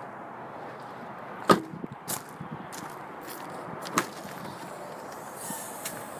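Steady outdoor background noise with a few sharp knocks and clicks. The loudest comes about a second and a half in and a second one near four seconds in.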